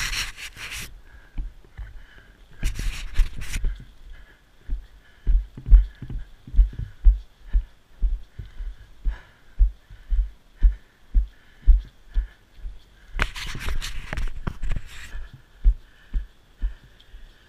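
Low, evenly spaced thuds of walking footsteps, about two a second, carried through a body-worn camera. There are a few short bursts of rustling noise, near the start, around three seconds in and near the end.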